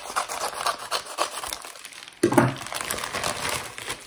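A plastic postal mailer bag crinkling as it is cut open with scissors and the bubble-wrapped contents are pulled out, with a louder rustle about two seconds in.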